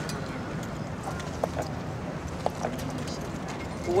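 Harnessed draft horses standing on pavement, a few hoof knocks about one and a half and two and a half seconds in, over steady outdoor background noise.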